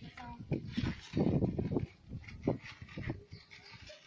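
Indistinct talking from people close by, in short broken bursts.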